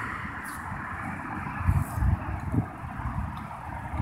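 Wind buffeting a phone's microphone over a steady outdoor background hiss, with a few low bumps about halfway through.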